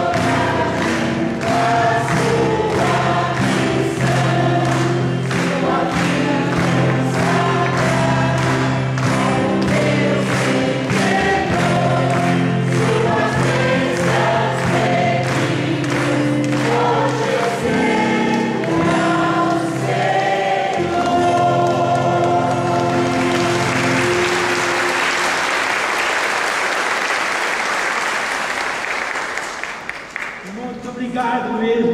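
A choir sings a religious song over a steady beat of about two strokes a second. The singing stops about three-quarters of the way through and gives way to applause, which fades just before the end.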